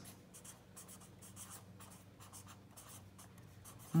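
Felt-tip marker writing on lined notebook paper: a run of faint, short strokes as a word is written out by hand.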